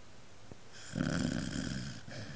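A sleeping dog snoring: a quieter breath, then one loud, rough snore starting about a second in and lasting about a second.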